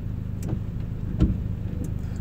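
A steady low rumble with a few faint clicks, in a pause between words.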